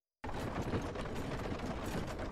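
Carriage wheels rolling: a steady rattling clatter of fine, rapid ticks that starts suddenly just after the beginning.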